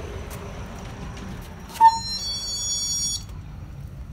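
Electronic shop-door entry buzzer going off: a short, loud ping a little under two seconds in, then a high, steady buzzing tone lasting about a second that cuts off suddenly.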